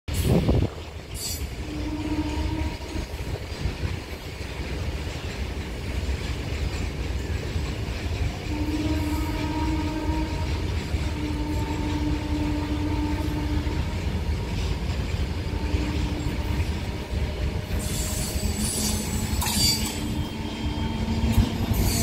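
Approaching MEMU (mainline electric multiple unit) train: a steady low rumble, with its horn sounding five long blasts. The rumble grows louder near the end, with sharp wheel clicks on the rails.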